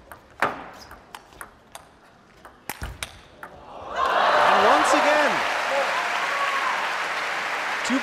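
A table tennis rally: the ball clicks sharply and irregularly off the bats and the table for about three and a half seconds. About four seconds in, as the point ends, the crowd breaks into loud cheering, shouting and applause that carries on.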